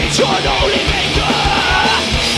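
Live thrash metal band playing: distorted electric guitars and bass over steady, rapid kick-drum beats, with the singer yelling over the music.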